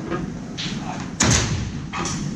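A door shutting with a single loud bang about a second and a quarter in, with a short ring-out in the room.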